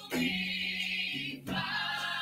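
Music with a choir singing long held notes, breaking briefly and moving to a new note about one and a half seconds in.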